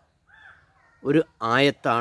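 A bird calls once, faintly, in a short pause before a man starts speaking again.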